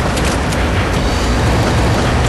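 Steady low rumble under a loud hiss, with faint crackles scattered through it.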